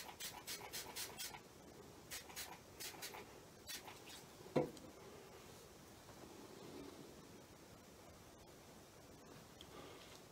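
Quick squirts of a small fine-mist spray bottle spraying water onto wet watercolour paper, several in quick succession in the first second and a half and a few more between two and four seconds. A single knock about four and a half seconds in, then faint room tone.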